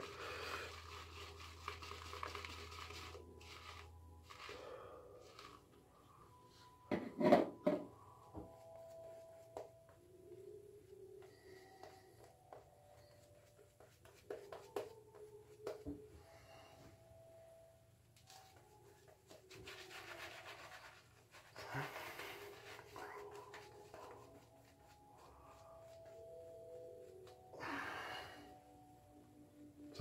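Shaving brush working shaving-soap lather, the bristles rubbing and swishing in short spells as the lather is whipped up and brushed over the face. Faint music from a concert downstairs carries in the background.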